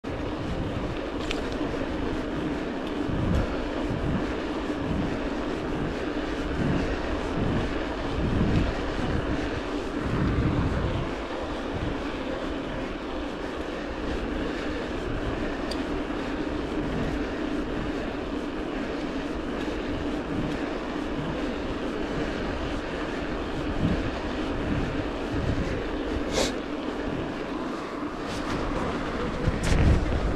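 Scott Scale 990 mountain bike rolling along rough, patched asphalt: a steady tyre hum with wind buffeting the camera microphone in low gusts, and a few short sharp knocks from bumps in the road.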